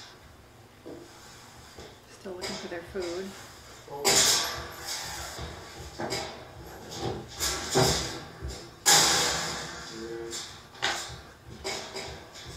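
Sheep moving about a hay-bedded pen: shuffling and rustling with several sudden knocks and scrapes, loudest about four and nine seconds in.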